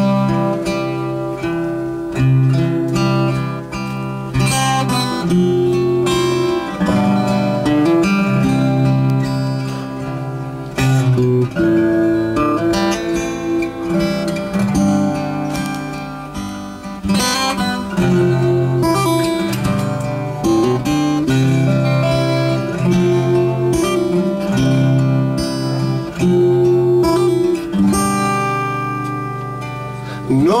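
Two acoustic guitars playing an instrumental passage together, strummed and picked chords changing every second or two.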